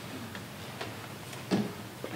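A few faint, irregularly spaced clicks over a low steady room hum, with one sharper click shortly before the end.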